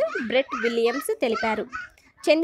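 Speech only: a narrator reading aloud in Telugu, with brief pauses between phrases.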